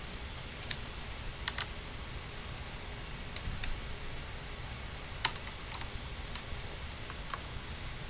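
Scattered light clicks and taps, about ten at uneven intervals, of a small Phillips screwdriver and fingers working the tiny screws out of a netbook's metal chassis plate.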